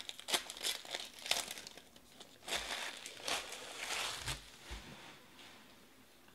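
Foil wrapper of a Panini Prizm baseball hobby pack crinkling and tearing as it is opened by hand, a run of irregular crackles that dies away about five seconds in.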